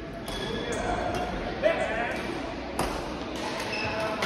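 Badminton rackets striking a shuttlecock during a doubles rally: several sharp hits echoing in a large sports hall, the loudest about one and a half seconds in, with voices in the background.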